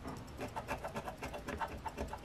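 An Engelhard silver bar scraping the latex coating off a scratch-off lottery ticket, in quick, rhythmic strokes of about six or seven a second.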